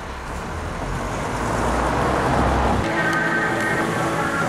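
Road traffic noise: a low rumble with a broad rush that swells to a peak about halfway. Near the end the rumble drops away and music with held notes comes in.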